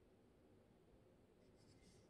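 Near silence, with faint, brief scratchy rubbing near the end from a hand gripping and turning a screw-capped glass wine bottle.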